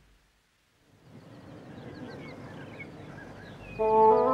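Silence for about a second, then faint birdsong of short chirps over a quiet outdoor hush. Sustained music chords come in near the end.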